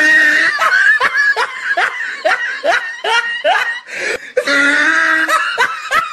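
Exaggerated laughter: a rapid string of short rising 'ha' syllables, about three a second, then a longer held vocal sound near the end.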